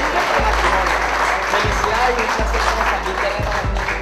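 Audience applauding, over background music and voices.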